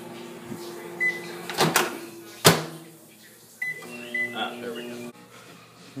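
Microwave oven running with a steady hum, with a short high beep about a second in. There are clunks, and then a sharp click at about two and a half seconds as the hum stops. Two more short beeps follow a second or so later.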